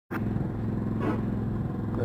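Motorcycle engine idling steadily with an even, low, rapid pulse.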